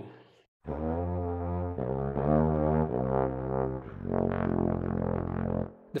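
Sampled bass trombone in F played through a special mouthpiece that makes it sound like a didgeridoo: a short phrase of low, buzzy held notes starting about half a second in, the last note the longest.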